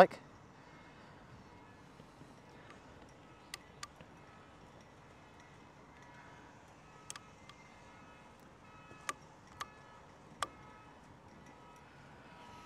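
Quiet background with a handful of short, sharp clicks: two close together about three and a half seconds in, and several more scattered through the second half.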